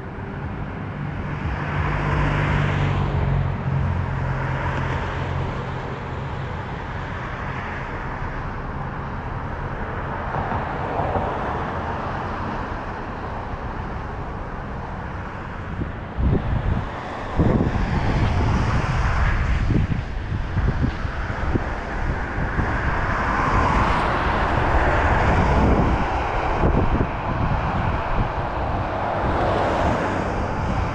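Road traffic at a street intersection, cars passing one after another with swells of tyre and engine noise. From about halfway on, wind buffets the microphone in irregular low gusts.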